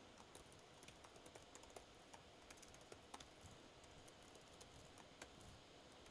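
Faint typing on a computer keyboard: an irregular run of soft key clicks.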